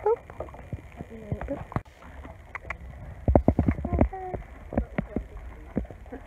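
Knocks and thumps of a horse moving about in its stable, the loudest cluster about three seconds in, with a few brief murmurs of a woman's voice.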